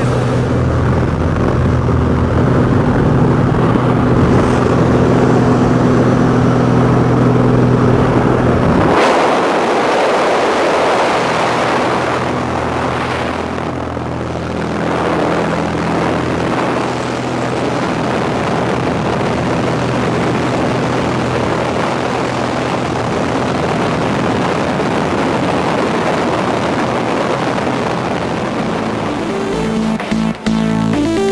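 A small plane's engine and propeller drone steadily, heard from inside the cabin. About nine seconds in, the engine drops lower and a loud rush of wind noise takes over through the open jump door, with the engine still under it.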